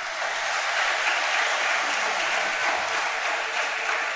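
Congregation applauding, starting suddenly and holding steady.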